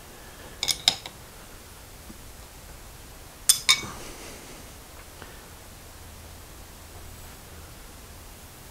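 Steel wrench clinking against the lathe's tool post and carriage as the tool post is cinched down and the wrench set aside: a quick double clink about a second in and another near the middle.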